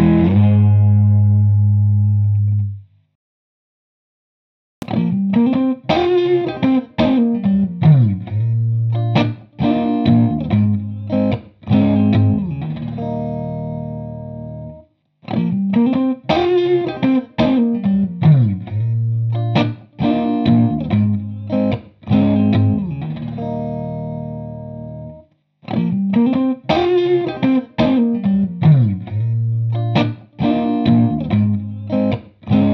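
Fender Stratocaster electric guitar through a chorus pedal, a vintage Boss CE-1 Chorus Ensemble and its PastFX Chorus Ensemble mini clone being compared. A chord rings out and stops; after about two seconds of silence a short riff with falling slides, ending on a held chord, is played three times over.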